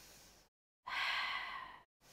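A woman's audible breathing while she exercises: one loud breathy rush of air lasting about a second, starting about a second in, after a fainter breath at the start.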